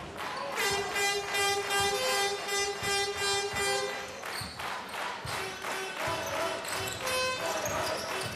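Basketball bouncing on a hardwood court as it is dribbled. Over it a long, steady horn-like note is held for about three seconds, followed by other held notes at different pitches.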